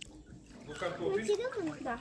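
A person speaking, after a short quiet moment at the start.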